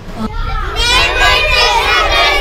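A group of young children's voices, many at once, calling out together and starting suddenly about a third of a second in.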